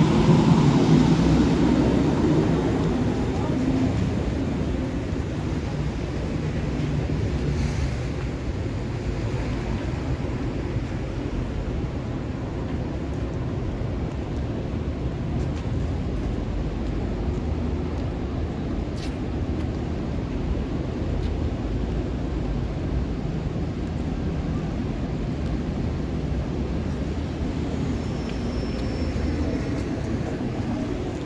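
Downtown street ambience: a steady low rumble of city traffic that is louder for the first few seconds and then settles. There is one brief click about two-thirds of the way through.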